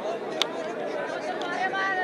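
Crowd of spectators chattering, many voices overlapping into a steady babble, with one sharp click about half a second in.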